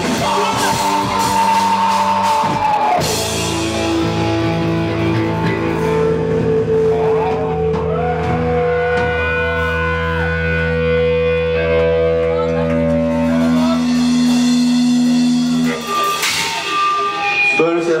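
Hardcore punk band playing live: drums and distorted electric guitar for about three seconds, then the drums stop and the guitars and bass ring out in long held notes for about twelve seconds. A loud crash comes near the end, followed by a man's voice.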